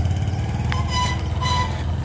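Tractor engine running steadily with a low rumble. Two short high-pitched tones come about a second in.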